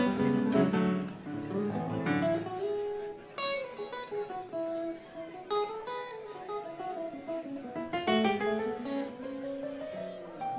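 Electric guitars of a live rock band noodling on stage: loose plucked single notes and sliding, bending pitches with no steady beat, the band warming up before the song.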